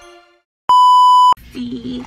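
The tail of soft intro music fades out. After a brief silence comes a single loud, steady electronic beep about two-thirds of a second long. It cuts off sharply and faint voices follow near the end.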